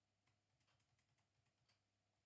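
Near silence broken by about a dozen faint, quick taps on a computer keyboard.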